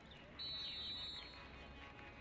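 Referee's whistle blown once for kick-off: a single steady, high, shrill blast starting about half a second in and lasting about a second.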